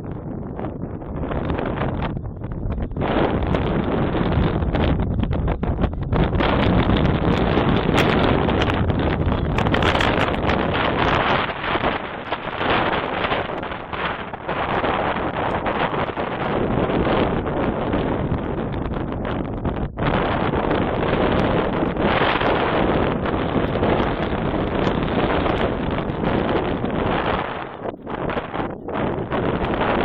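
Wind buffeting the microphone: a loud, uneven rush of noise that swells and dips with the gusts.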